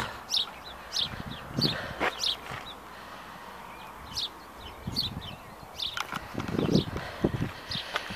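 Small birds chirping outdoors, a scatter of short high chirps throughout. A run of low thuds comes in the last few seconds and is the loudest sound.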